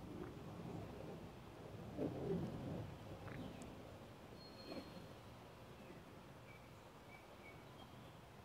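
Faint outdoor background sound: a low, uneven rumble that swells louder about two seconds in, with a few short, high bird chirps later on.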